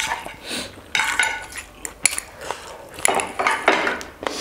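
Metal fork and spoon clinking and scraping against ceramic plates and a small bowl, with several sharp clinks.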